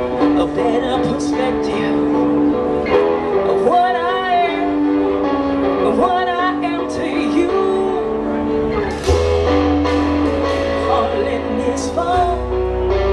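A live rock band playing a song: electric and acoustic guitars, bass guitar and drums, with a woman's sung vocals at moments. A deep bass note comes in about nine seconds in and holds.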